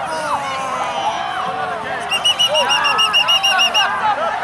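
Several people shouting over one another. From about halfway, a rapid run of about a dozen short, high-pitched toots, roughly seven a second, cuts in briefly.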